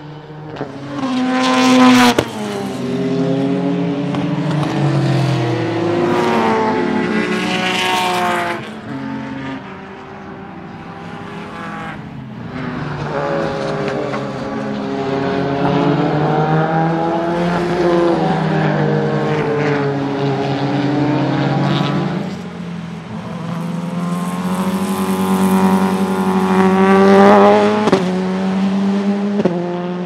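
Mercedes-Benz CLK AMG DTM race car's naturally aspirated 4.0-litre AMG V8 at racing speed, revving up and falling back in pitch through gear changes. It is loudest as it passes about two, eight and twenty-seven seconds in.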